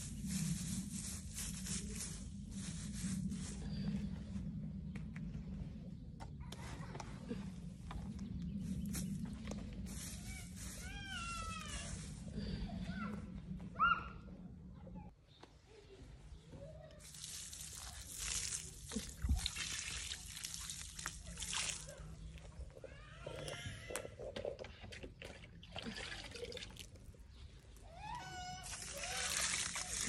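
Water poured onto soil and straw mulch around a freshly replanted lavender bush, splashing and trickling in several spells with short pauses between.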